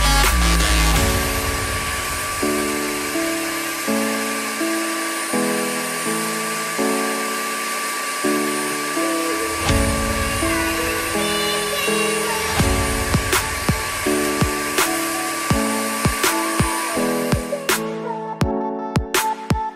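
Background music with a stepped melody over the steady whine and suction hiss of a Bissell SpotClean Pro carpet extractor drawing through its hand tool. The machine sound cuts off just before the end while the music goes on.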